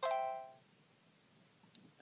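Short electronic chime from the Vlingo voice-assistant app on a Samsung Android phone, sounding once and fading within about half a second: the cue that the app has finished recognising the spoken request.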